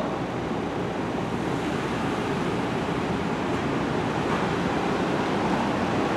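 Steady rushing outdoor ambience of a city street: a continuous noise with no distinct events.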